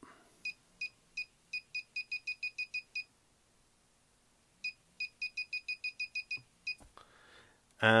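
Handheld probe pinpointer (KKmoon) beeping as a gold ring is brought up to its tip. There are two runs of short, high beeps, each quickening from a slow pulse to about six a second, with a silent gap of about a second and a half between them. The faster beeping signals that the target is closer.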